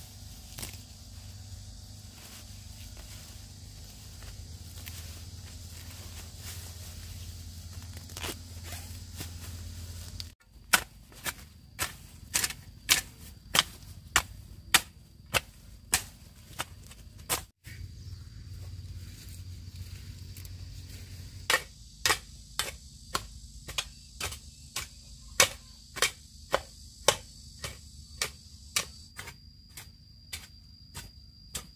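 A hoe chopping into dry garden soil: a quick series of sharp strikes, about two a second, starting about a third of the way in, pausing briefly in the middle, then going on to the end. A low rumble comes before the strikes, and a steady high insect drone runs through the second half.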